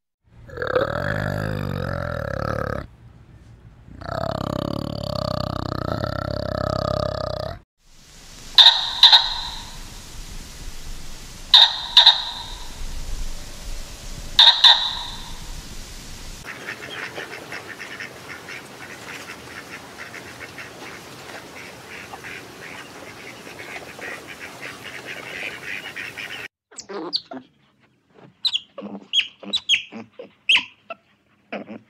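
A run of different animal calls cut one after another: two long calls in the first seven seconds, three short sharp calls about three seconds apart, a steady chirring for about ten seconds, then quick short high chirps near the end.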